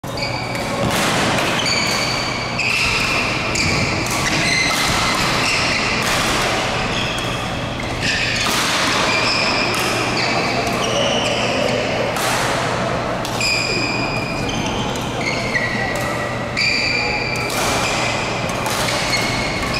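Badminton rally on an indoor court: sports shoes squeak again and again on the court floor as the players move, with sharp racket strikes on the shuttlecock, in a large echoing hall.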